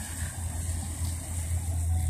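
Steady low machine hum with a faint hiss behind it.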